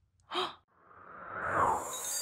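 A woman's short breathy gasp, then a whoosh sound effect that swells over about a second with a high shimmer on top, marking a cartoon character's entrance.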